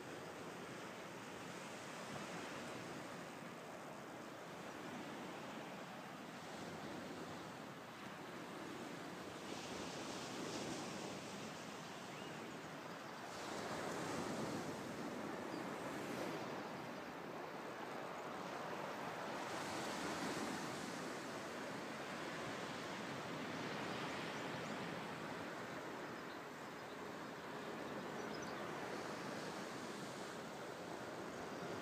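Outdoor ambience: a steady, faint rushing noise that swells and eases every few seconds, loudest about halfway through.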